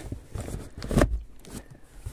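A few short knocks and rustles from handling an open cardboard box of large cat-food tins, the loudest knock about a second in.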